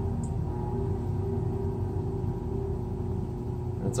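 Electric potter's wheel running at a slowed speed: a steady low motor hum with a faint higher tone over it.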